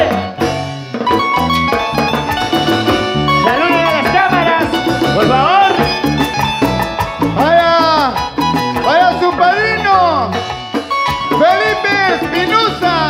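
Live huayno band music: a lead melody of gliding, bending notes over a bass line and a steady cymbal beat.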